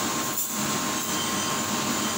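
Steady machine noise of a commercial kitchen, an even rushing hum with a few constant tones running throughout.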